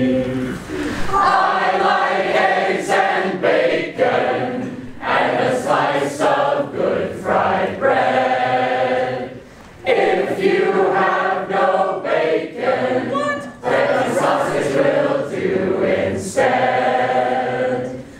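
A roomful of people singing a cappella in a three-part round, the voice parts overlapping, with short breaks between phrases about halfway through and again a few seconds later.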